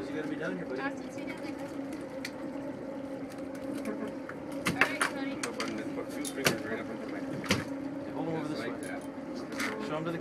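A boat engine runs with a steady low hum under several sharp clicks and knocks as a hook is worked out of a salmon on the deck with pliers. Faint voices are also heard.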